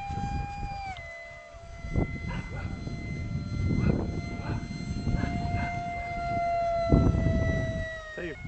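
Whine of the RC foam plane's electric ducted fan, a Phase 3 F-16 unit driven by a brushless motor, in flight overhead: a steady high tone that steps down a little in pitch about a second in and then holds. Wind buffets the microphone, loudest near the end.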